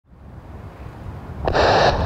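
Wind buffeting the microphone, an uneven low rumble fading in and building. About one and a half seconds in, a steady hiss starts abruptly.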